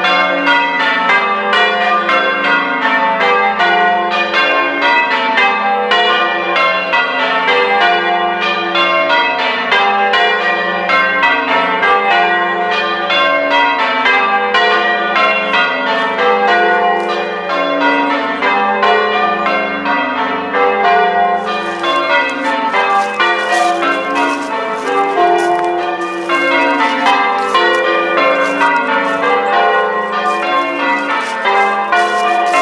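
Church tower bells being change-rung: a rapid, unbroken stream of bell strikes whose order keeps shifting.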